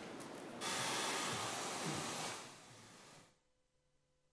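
A steady rushing hiss like white noise starts about half a second in, fades, and cuts off to near silence a little over three seconds in.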